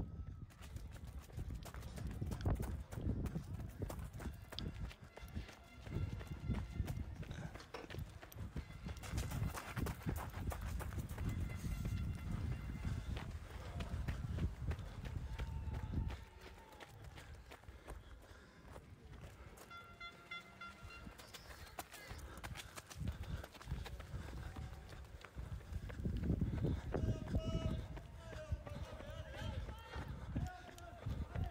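Running footsteps and wind buffeting a microphone moving alongside a runner, a loud rapid patter of steps for about the first half. Then it drops abruptly to quieter outdoor background with faint distant voices.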